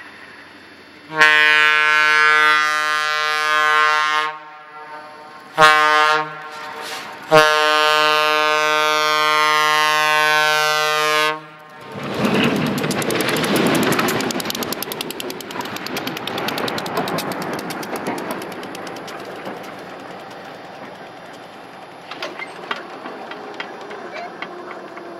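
Diesel locomotive air horn on a railroad snowplow train: a long blast, a short one, then another long blast. The horn then cuts off as the plow train rushes past close by, a loud wash of engine noise and flying snow that slowly fades away.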